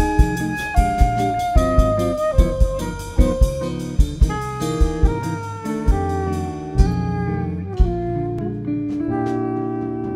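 Live instrumental jazz: a straight soprano saxophone plays a stepping melodic solo line over drum kit and guitar accompaniment, holding one long note near the end.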